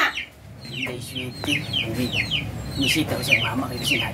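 Chickens clucking: a run of short, falling calls repeated several times a second.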